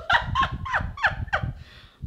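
A woman laughing: a quick run of about five high 'ha' bursts, each falling in pitch, ending in a breathy intake.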